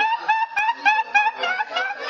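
A person laughing hard in rapid, high-pitched bursts, about six a second.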